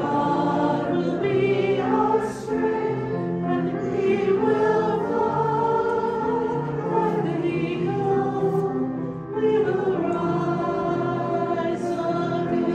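A congregation singing a hymn together, many voices holding long phrases, with short pauses for breath about two seconds in and again near nine seconds.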